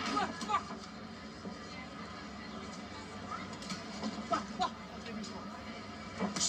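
Boxing broadcast audio played through a TV speaker: arena background noise and indistinct voices with music underneath, and short shouts about half a second in and again around four and a half seconds in.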